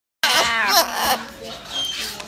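Blue-and-gold macaws vocalizing at close range, a run of quickly bending, warbling calls that is loudest in the first second and tails off after.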